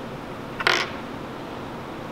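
A steel hex bolt scraped briefly on the workbench as it is picked up, one short scrape about two-thirds of a second in, over a steady room hiss.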